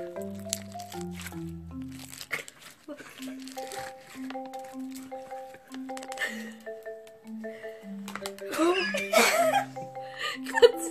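Homemade glue slime giving small crunching, crackling clicks as it is squeezed and stretched between the fingers, over background music with a simple melody of short notes. Laughter comes in near the end.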